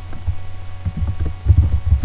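Computer keyboard keystrokes heard as irregular dull, low knocks through the microphone, coming thicker in the second half, over a steady electrical hum.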